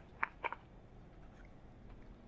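Two short, light clicks about a quarter second apart as a strung tennis racket is picked up and handled on a table, then only faint background.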